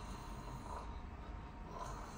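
A patient imitating a snore on request during a flexible endoscopy of the nose and throat, heard faintly as a soft snorting breath. He is made to snore while the scope looks at the uvula and soft palate.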